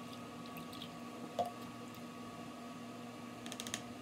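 Faint small liquid and handling sounds as drops of milk go from a bottle into a plastic tub of water and are stirred with a plastic spoon: a soft blip about a third of the way in and a flurry of light clicks near the end, over a steady low hum.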